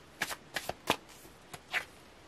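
Tarot cards being shuffled and a card pulled from the deck: a quick run of about seven short, sharp card snaps in under two seconds.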